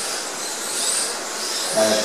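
Kyosho Mini-Z 1:28-scale electric RC cars racing: the high-pitched whine of their small electric motors and tyres, swelling and fading as cars pass.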